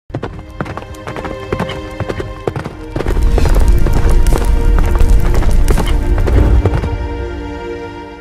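Intro music for an animated logo: sharp clicking percussion over held notes, then a loud swell with deep bass about three seconds in, fading toward the end.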